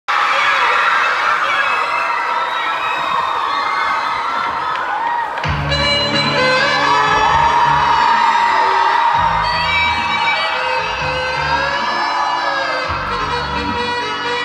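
Audience cheering and whooping. About five seconds in, dance music with a heavy bass beat starts and plays on over the crowd.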